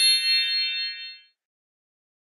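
A bright chime sound effect ending a course-book audio track: several high ringing tones struck together, dying away over about a second.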